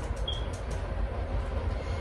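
Steady low background rumble with a faint hiss, in a pause between spoken words.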